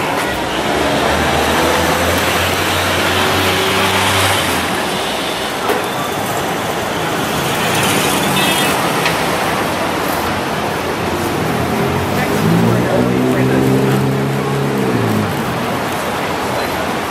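Street traffic noise: a steady wash of road noise from passing cars, with a vehicle's engine running through the first few seconds and another vehicle driving past near the end, its pitch rising and then dropping away.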